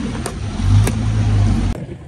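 Two sharp taps about half a second apart, typical of a badminton racket striking a shuttlecock during a rally, over a steady low rumble. Everything cuts off abruptly near the end.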